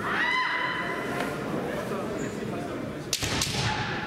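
A long, high-pitched kiai shout from a kendo competitor, swooping up and then held for about two seconds, followed a little after three seconds by sharp cracks of bamboo shinai strikes, over the echoing murmur of a hall crowd.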